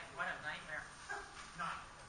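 A person talking, the words indistinct.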